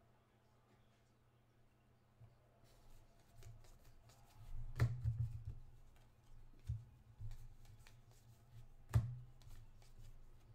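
Football trading cards being flipped through in the hands: faint rustling and small clicks of card stock that start a couple of seconds in, with two sharper taps about five and nine seconds in.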